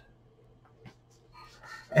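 Near silence: room tone in a small room, with one faint click about a second in and faint breath-like sounds building near the end, where a man's voice starts with a drawn-out word.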